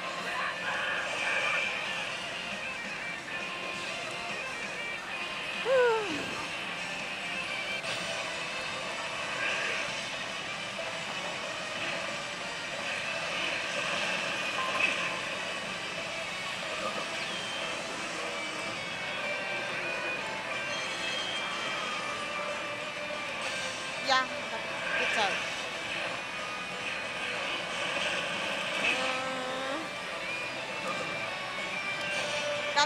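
Pachislot machine music and electronic sound effects over the constant din of a pachinko parlour, with a sharp falling tone about six seconds in.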